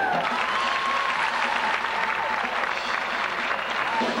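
Audience applauding, with a faint tone that slides up and back down underneath during the first couple of seconds.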